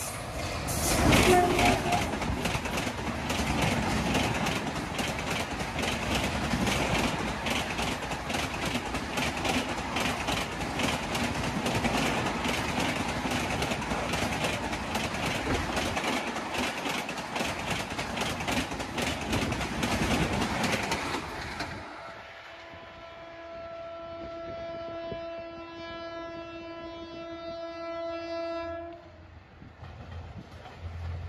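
Express passenger train behind a WAP7 electric locomotive passing at speed, about 90 km/h: a loud rush of coaches with rapid wheel clicks over the rail joints, loudest as the locomotive goes by in the first two seconds. After a sudden change, a train horn sounds one long steady note for about seven seconds, then stops.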